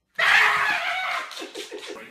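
A person screams suddenly, loud and high, then breaks into short bursts of laughter near the end.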